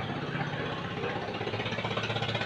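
A motor or engine running steadily in the background, with a fast, even pulse.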